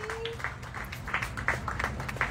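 Scattered clapping from a small crowd, with brief snatches of voices calling out among the claps.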